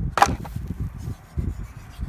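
An empty plastic antifreeze jug being picked up and handled on a wooden deck: one sharp knock just after the start, then a low, uneven rumble.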